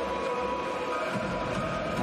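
Ice hockey arena crowd cheering a goal, a steady noise of many voices with a held tone running through it.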